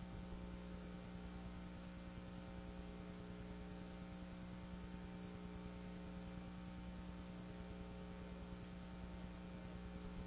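Faint, steady electrical mains hum with a ladder of higher overtones, unchanging throughout.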